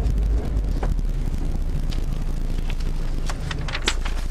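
Rally car's engine running at low speed as heard from inside the cabin, a steady low rumble as the car creeps forward on snow, with a few sharp clicks, the loudest near the end.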